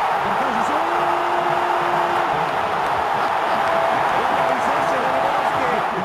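Large stadium football crowd keeping up a loud, steady din of many voices during a penalty shootout while the next taker steps up, with a few long held notes rising out of it.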